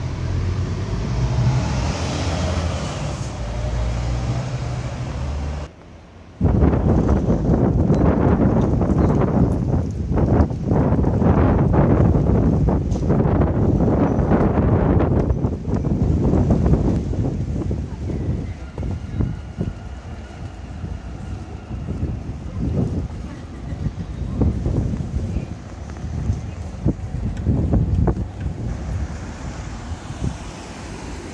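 Strong wind buffeting a phone's microphone in rough gusts, loudest for about ten seconds after a brief dip near the start, then easing, with street traffic underneath.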